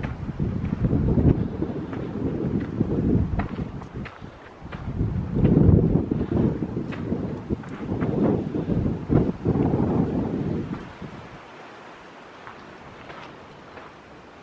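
Wind buffeting the camera microphone in irregular gusts, a low rumble that dies down about three-quarters of the way through.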